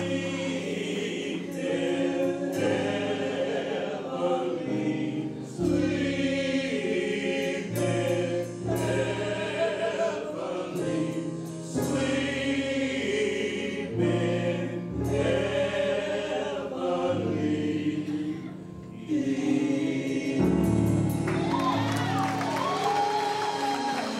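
Live gospel music: voices singing together in harmony over sustained chords from a Yamaha S90 keyboard, with a low bass line, the chords changing every couple of seconds.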